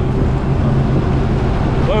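Jet ski engine running steadily with a low, even hum, mixed with water and wind noise from the moving craft. A man's voice starts a word right at the end.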